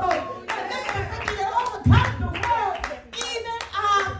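Hands clapping irregularly during church worship, under a woman's pitched voice calling out into a microphone.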